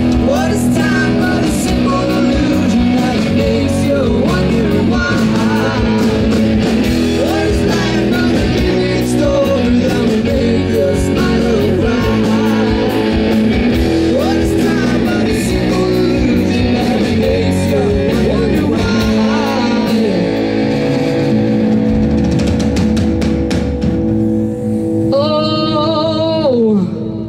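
Live rock band playing: electric guitars over bass and drum kit, with guitar lines bending in pitch. The song closes on a held final chord with a sliding guitar note near the end.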